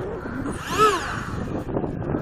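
Electric ducted fan of an RC plane (70 mm EDF on a Dynam Hawk Sky) revved briefly up and back down once, a little under a second in, over a steady background noise.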